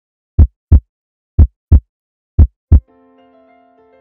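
Heartbeat sound effect: three loud, low double thumps (lub-dub) about a second apart, followed about three seconds in by soft sustained keyboard music chords.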